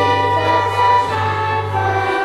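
Children's choir singing with violin and flute accompaniment over a steady low note, held tones changing pitch about a second in.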